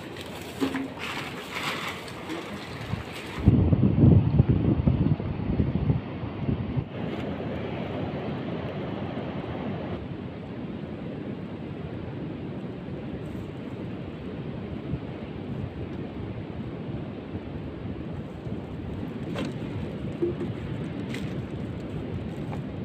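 A few brief clicks and crinkles of plastic bottles being picked up, then wind buffeting the microphone in a loud low rumble for a couple of seconds, settling into a steady rush of wind and surf.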